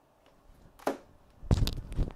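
Clip-on microphone knocking and rubbing against a necklace: a single click about a second in, then a rapid run of clattering, thumping knocks from about halfway through.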